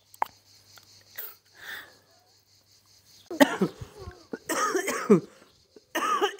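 A woman with asthma coughing in a short fit of several chesty coughs, starting about halfway through, sign of her tight chest and shortness of breath. A single light click comes just after the start.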